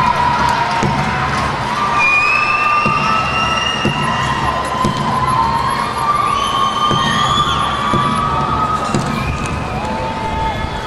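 Stadium crowd cheering and shouting, with long whistle-like tones that slide up and down through it and a low thump about every two seconds.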